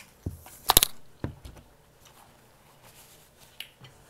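A few sharp knocks about a second in, the loudest in the middle, then a few faint clicks, as a plastic drinking tumbler is handled and set down on the table.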